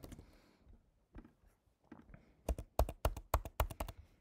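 Typing on a computer keyboard to enter a login email and password: a few scattered keystrokes, then a quick run of keys in the second half.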